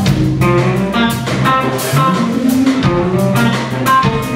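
A live blues band playing: electric guitar lines over drums with a steady cymbal beat and keyboards.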